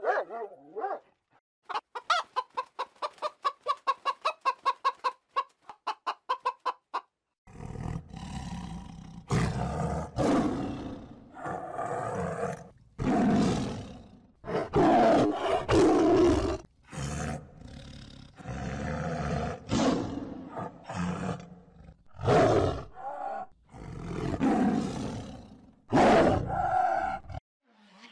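A dog's bark cuts off just at the start. A fast run of short, evenly spaced calls follows for about five seconds. Then a tiger roars and growls in a long string of separate roars.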